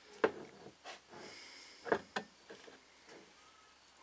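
Universal-joint bearing cap being pushed by hand back onto its cross: a few small clicks and taps with a brief scraping rub, spread over the first two seconds. The cap seats without disturbing its needle rollers.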